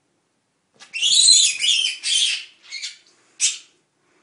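A pet rabbit screaming in distress as a boa constrictor seizes and coils around it. A loud, high-pitched shriek begins about a second in and lasts a second and a half, then two shorter cries follow, the last near the end.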